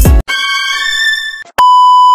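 Music with a deep beat cuts off abruptly, followed by a brief held electronic chord; then, about one and a half seconds in, a loud steady high-pitched test-tone beep of the kind played with television colour bars begins.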